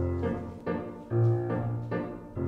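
Piano accompaniment for a ballet exercise: chords struck in a steady beat, about two a second, each fading before the next.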